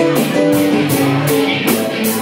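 Guitar playing a changing line of notes in a jam, over a steady beat.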